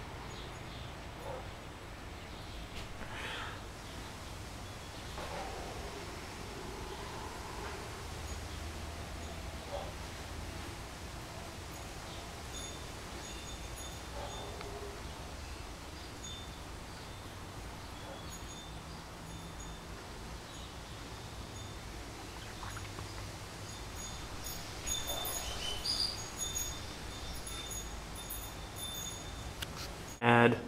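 Quiet room tone: a low steady hum, with faint high-pitched chirps now and then in the second half.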